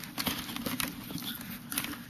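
Close handling noise: a run of small irregular clicks and rubbing as a miniature plastic camera is pushed into its clip on a metal bracket at the side of a crash helmet.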